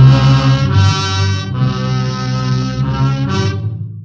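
Dramatic radio-drama music sting: loud held chords that strike suddenly and shift a few times, closing the scene on a cliffhanger before the break.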